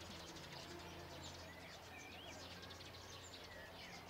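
Faint outdoor quiet with small birds chirping now and then, short rising and falling calls, over a low steady hum.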